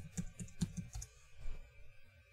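Typing on a computer keyboard: an irregular run of key clicks that stops shortly before the end.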